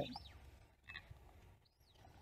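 Faint bird chirps in near quiet: two short, high notes that rise and fall, one just after the start and one near the end.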